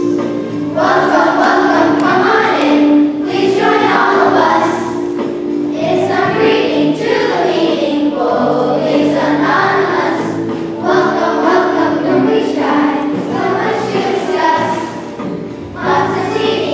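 A group of children singing a song together in unison, with sustained instrumental notes underneath.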